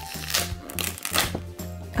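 A paper flap being peeled back and rustling in a couple of short crinkly bursts, over steady background music with a low bass line.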